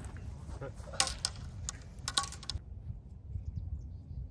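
A quick series of sharp clicks and clinks, about five, over a steady low rumble of wind on the microphone.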